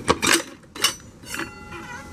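Automatic transmission front pump being pried and drawn out of the transmission case, taking the front drum with it: a few sharp metal clicks and knocks, then a faint metallic ringing in the last half second.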